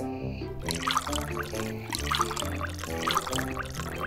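Water poured from a glass jug onto dry rolled oats in a pot, with background music playing over it.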